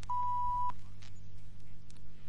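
A single short, steady electronic beep lasting about half a second, with a click where it starts and stops, over a low steady hum. It is a cue tone that marks the change to the next picture.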